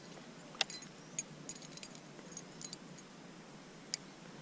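Light metallic clinks and ticks from a spinnerbait's metal blades and wire as it is turned over in the hands: a sharp click about half a second in, another about a second in, scattered faint ticks, and one more click near the end.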